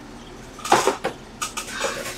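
Cardboard trading-card boxes and packs being handled on a desk: a short rustle and knock about three-quarters of a second in, with a few lighter handling sounds near the end.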